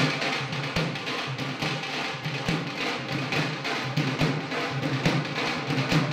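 Nagada drums played in a fast dance rhythm, with a deep stroke about once a second.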